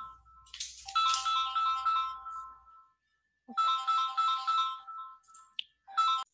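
Electronic phone ringtone: a short tune of quick notes on about three pitches, repeating roughly every two and a half seconds with brief pauses between phrases.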